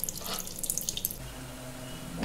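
Tap water running and splashing onto whole fish on a steel plate in a stainless-steel sink. The splashing stops a little over a second in, leaving a faint low hum.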